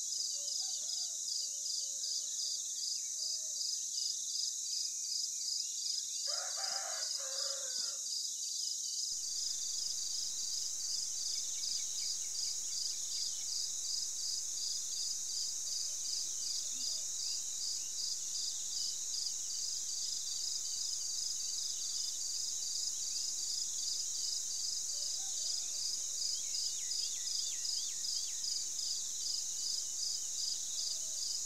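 A steady chorus of insects in a high, rapid, even pulse, with a rooster crowing once about six seconds in and a few faint bird chirps near the end.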